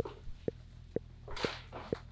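Intellijel Plonk physical-modelling percussion module playing a short struck note about twice a second, each hit at the same pitch and quickly dying away.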